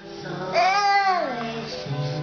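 Background music with a child's high voice rising and falling once, for about a second, starting about half a second in.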